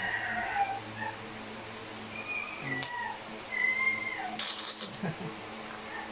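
Small pet dog whining in short, high, thin calls, three or four of them, each bending slightly in pitch, with a low steady hum beneath and a brief rustle near the end.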